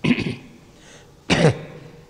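A person clearing their throat twice: a short rasp at the start and another about a second and a half in.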